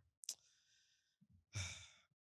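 A speaker's breath in a pause between phrases: a small mouth click just after the start, a faint hiss, then a louder sighing breath about one and a half seconds in.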